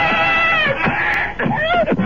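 A person screaming: one long, held cry, then a second shorter cry that rises and falls near the end, as a struggle at the top of a staircase ends in a fall down the stairs.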